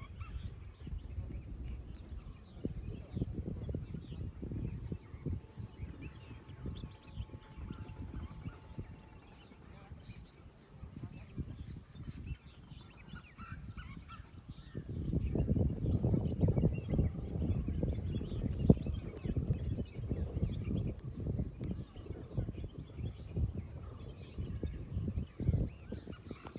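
Wind buffeting the microphone: an irregular low rumble that comes in gusts and grows louder a little past halfway.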